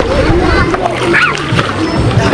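Pool water splashing and sloshing close to the microphone as children swim and thrash about, with a short high child's voice in the middle.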